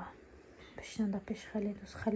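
Only speech: a brief lull, then soft, low talking from about halfway in.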